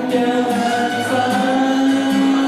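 A man singing a Mandarin song into a microphone to his own acoustic guitar strumming, holding one long note through the second half.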